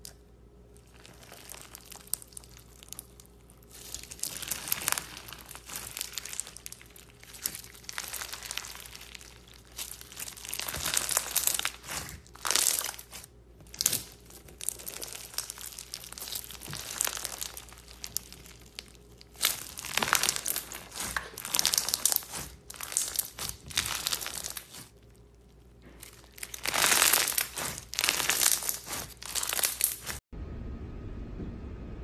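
Clear bead-filled slime being squeezed and pressed by hand, giving crackling, crunchy popping in bursts of a few seconds with short pauses between them.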